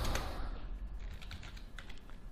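Computer keyboard keystrokes: a handful of light key clicks as a short terminal command is typed, most of them in the second half.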